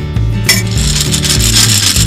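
Gumballs churning and rattling inside a gumball machine's globe as a cartoon sound effect. The rattle starts suddenly about half a second in and runs on over steady background music.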